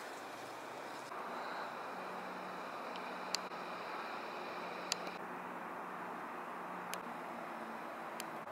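Steady outdoor rushing noise with three sharp clicks spread through it, one every one and a half to two seconds.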